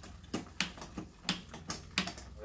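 Bicycle rear wheel spinning freely on a workshop repair stand while it is checked over, with a sharp tick every third of a second or so, at uneven spacing.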